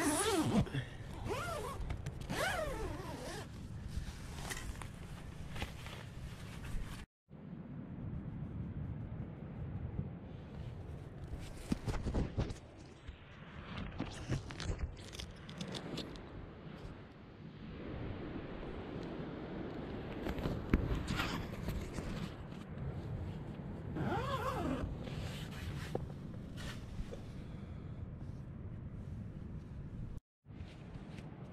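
A zipper pulled in a few quick rasping strokes at the start and again about 24 seconds in, with fabric rustling and handling scrapes and knocks between. The sound drops out briefly about 7 seconds in.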